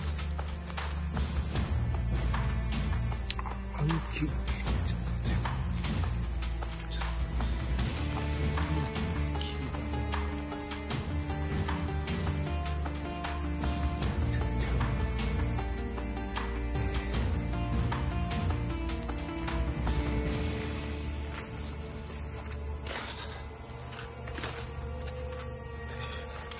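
Steady high-pitched chorus of night insects, with scattered clicks and rustles from someone moving about.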